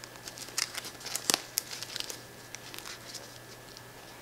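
Light handling clicks and ticks from the metal snap hook on the strap and the zipper pulls of a nylon Pacsafe Daysafe crossbody bag being fiddled with in the hands. The clicks are scattered and irregular, and the sharpest comes about a second and a half in.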